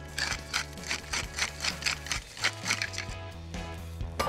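Pepper mill being twisted over a bowl of flour: a quick run of gritty grinding strokes, about four a second, stopping about three seconds in, over background music.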